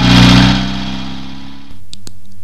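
A car driving past, loudest just after it starts and then fading away, cut off about a second and a half in.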